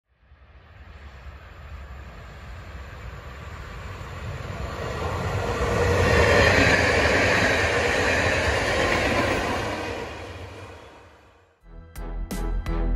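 Passenger train passing along the rails: a rumbling run of wheels on track that swells to its loudest about six seconds in and then fades away.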